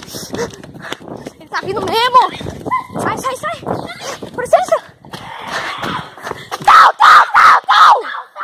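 Excited young voices shouting and crying out, with a run of loud short cries near the end.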